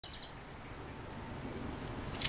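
High, thin bird calls: a thin whistle held for about a second, then a shorter one pitched a little lower and falling, over faint outdoor background noise.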